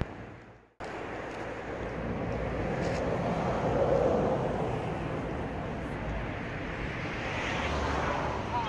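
Steady rushing noise of a passing vehicle, swelling to its loudest about four seconds in and easing off again, after a brief cut-out near the start.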